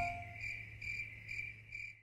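Faint chirping of crickets, a high trill pulsing about two to three times a second, while the last note of the song fades out in the first half second. The chirping cuts off abruptly at the end.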